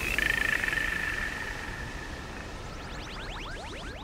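Electronic music: a high, rapidly pulsing buzz comes in just after the start and fades away over about two seconds, then a stream of quick rising synth chirps, several a second, returns near the end.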